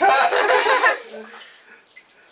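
A toddler laughing loudly in a bath for about a second, then dying away.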